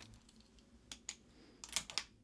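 A few light clicks and taps as drawing supplies are handled on a desk, with a quick cluster of them near the end.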